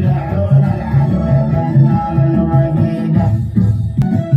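Saudi folk dance music with a steady, heavy beat, played loud through a stage sound system.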